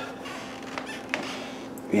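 Sears hassock-type floor fan running: a steady electric-motor hum with faint air rush, and two light clicks near the middle.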